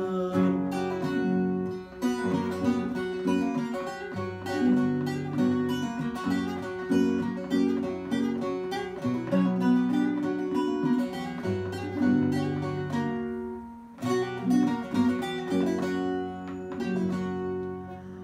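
Instrumental interlude of a Turkish folk song played on bağlama (saz) and acoustic guitar: a quick picked bağlama melody over guitar accompaniment, with a short break about fourteen seconds in before the playing resumes.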